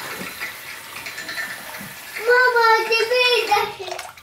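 Tap water running in a steady stream into a bathroom washbasin. About two seconds in, a high, drawn-out voice rises over the water for about a second and a half.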